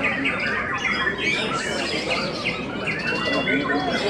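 Caged songbirds, among them a white-rumped shama (murai batu), singing all at once: dense, overlapping whistles, glides and chattering notes, with a murmur of voices underneath.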